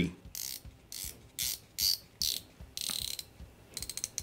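Rotating bezel of a Reverie Diver dive watch being turned by hand, ratcheting through its detents in a series of short clicking bursts, with a quick run of sharp clicks near the end.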